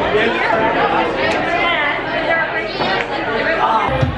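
Overlapping chatter of several people talking at once in a crowded room.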